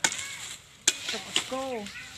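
A knife chopping at a sugarcane stalk: three sharp cuts, one at the start and two more about a second in, half a second apart. A short voice sounds between and after the last cuts.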